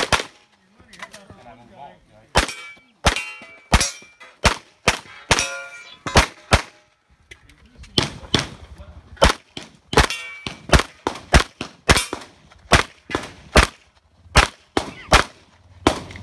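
A 1911 single-stack pistol firing about two dozen shots in quick pairs and strings with short pauses, the ringing of hit steel targets following several of the shots.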